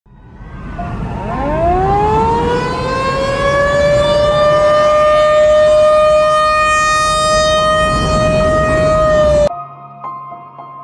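Outdoor tornado warning siren winding up: its pitch rises over a couple of seconds, then holds one steady tone over a low rumble of noise. It cuts off suddenly near the end.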